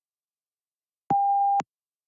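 A single short electronic beep, one steady mid-pitched tone about half a second long that switches on and off with a click, about a second in. It is the test's start-of-recording beep, signalling that the spoken answer is now being recorded.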